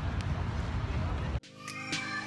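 Steady city street noise with a low traffic rumble that cuts off abruptly about a second and a half in. Background music starts quietly after the cut.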